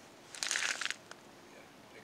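A brief crunching rustle about half a second in, from a person handling a tip-up and moving on snow-covered ice.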